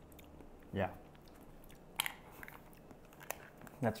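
Mouth sounds of a person tasting caviar off a plastic spoon: a few faint, sharp smacks and clicks as he chews.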